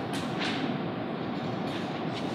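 Steady, even rumbling background noise of the room with no speech, and a couple of faint ticks about half a second in.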